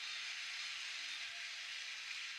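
Steady background hiss without speech, even in level throughout.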